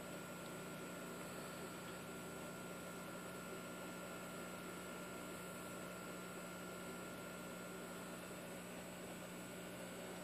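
Faint, steady hum and hiss of running aquarium equipment, with a few constant tones over it and no distinct events.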